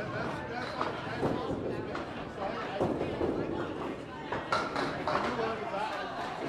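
Indistinct chatter of people in a candlepin bowling alley, with a few scattered knocks of balls and pins.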